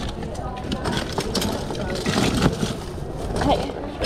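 Small plastic toy figures clattering and clicking against each other and the sides of a plastic tub as hands dig through and sift the pile, with irregular short clacks throughout.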